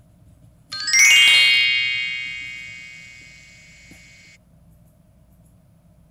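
A bright chime sound effect: a quick upward run of high bell-like notes about a second in, the notes then ringing on together and fading for about three seconds before cutting off suddenly.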